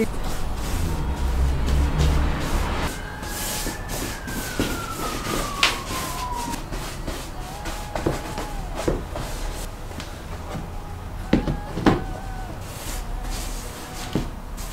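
Background music, with a long sliding tone that falls in pitch about a third of the way in.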